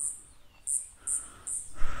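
Cricket chirping in a steady rhythm, about two short high chirps a second. Near the end a louder, fuller sound with a low rumble swells in under it.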